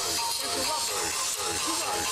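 Cornermen talking urgently over one another close to the microphone, over a steady hiss of arena crowd noise with music playing in the background.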